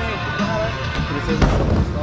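Music playing throughout, with one sharp, loud knock about a second and a half in, as a skateboard drops in and its wheels hit the wooden bowl.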